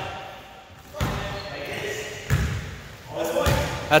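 Basketball bouncing on a hardwood gym floor, a few separate bounces echoing in the hall.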